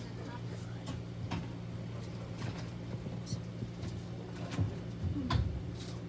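A steady low hum from an electric fan running, with a few faint, scattered clicks and taps from handling a small plastic container.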